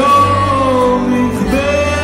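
Live pop/rock concert: a male singer holding long, gliding notes over a band, heard loud through the stage PA from within the audience.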